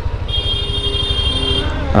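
Honda motorcycle engine running with a low pulsing rumble, while a vehicle horn sounds one steady note for about a second and a half, starting shortly in.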